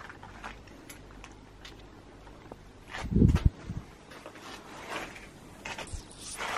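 Faint clicks and rustles of objects being handled, with one short, louder low burst about three seconds in.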